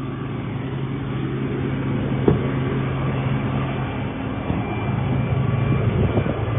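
A vehicle engine running steadily with a low hum, with a single sharp click or knock a little over two seconds in.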